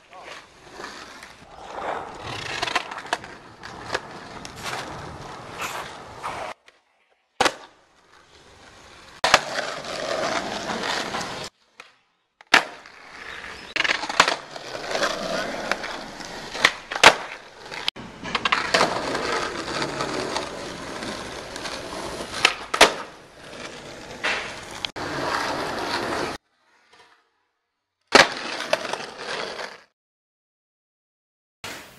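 Skateboard wheels rolling on asphalt, broken up by several sharp pops and clacks of the board being snapped and landed, in a series of short takes that cut off abruptly between them.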